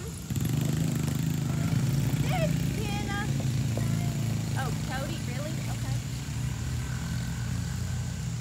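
Quad ATV engine running steadily, with a few short high calls over it.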